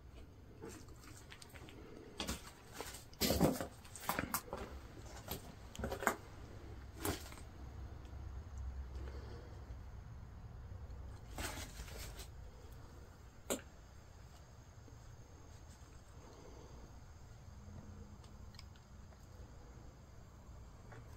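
Footsteps crunching and scraping on a gravel- and debris-strewn cellar floor: a cluster of irregular crunches in the first several seconds, then two more around the middle, over a quiet small-room background.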